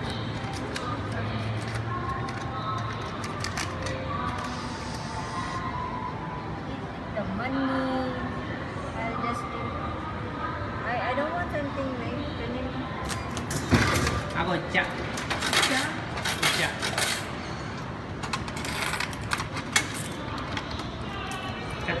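Coins clinking in a drinks vending machine: a cluster of sharp metallic clinks a little past the middle, then a few more shortly after, over a steady murmur of voices and store background sound.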